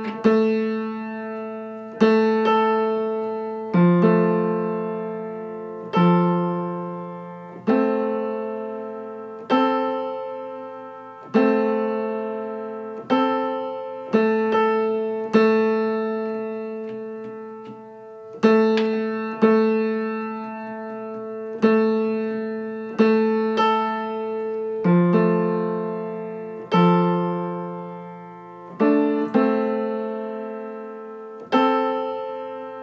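Piano strings struck again and again, a note or two-note interval every one to two seconds, each left to ring and die away: the A3–A4 octave being played repeatedly while it is tuned by ear for beats. A lower note is sounded along with it at times.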